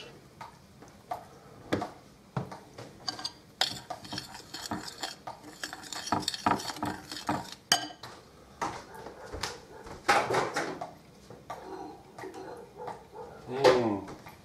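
Metal spoon and kitchen utensils clinking and knocking against a glass mixing bowl: scattered sharp clicks, with a stretch of hiss from about four to eight seconds in.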